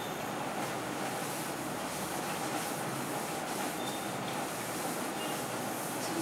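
Cloth duster rubbing across a chalkboard in repeated wiping strokes, over steady background room noise.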